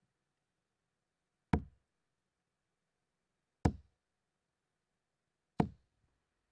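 Three darts thudding into a Winmau bristle dartboard, one throw about every two seconds, each a single sharp thud with almost nothing between them.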